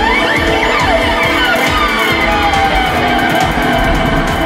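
Electric upright bass playing an original instrumental piece over a produced backing track with a steady low beat. Many notes slide up and down in pitch.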